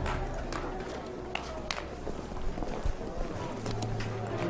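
Street ambience: footsteps and a murmur of background voices, with scattered sharp clicks and knocks.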